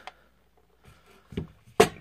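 Light handling sounds from a box mod and its tin packaging on a tabletop mat: mostly quiet, then a soft bump about a second and a half in and a sharp click near the end.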